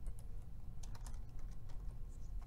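Computer keyboard typing: an uneven run of about ten key clicks, over a steady low hum.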